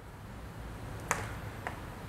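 Chalk tapping against a chalkboard while writing: two short, sharp taps about half a second apart, over a faint low hum.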